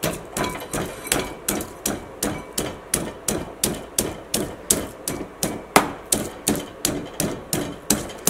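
Stone pestle pounding chopped ginger and green chillies in a stone mortar, a steady run of knocks about three a second.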